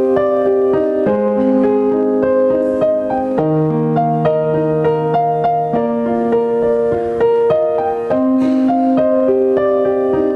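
Digital piano playing the slow introduction to a worship song, in held chords that change every second or so.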